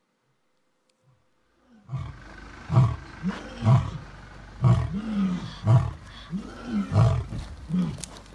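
A lion roaring in a series of low grunting calls, each rising and falling in pitch, about one a second, starting about two seconds in. It is played back from a video recording.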